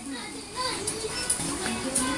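Indistinct chatter that includes a young child's voice, over background music.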